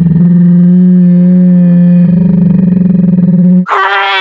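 Loud, steady low electronic drone with a faint pulsing, shifting slightly about a quarter second in and again about two seconds in. Near the end it breaks into a higher, wavering tone.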